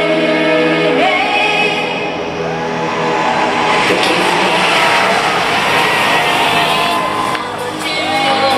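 Live pop dance music from an arena concert, heard from the audience, with sung or chanted vocal lines bending in pitch over the electronic backing. The music dips briefly twice, the second time near the end.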